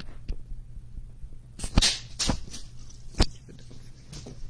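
A handful of sharp knocks and clunks from objects being handled on a table, the loudest a little under two seconds in and another just after three seconds, over a low steady hum.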